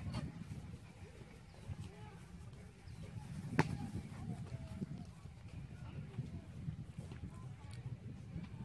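A soccer ball kicked once, a sharp impact about three and a half seconds in, over a steady low rumble of wind on the microphone and faint distant voices.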